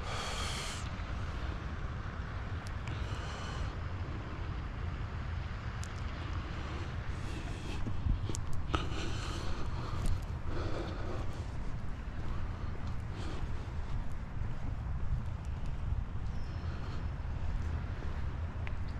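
Steady low wind rumble on the microphone of a camera carried on a walk outdoors, with several short hissing breaths from the walker.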